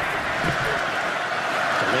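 Steady crowd noise from a large stadium crowd, with faint voices picked up by the field microphones as the ball is snapped.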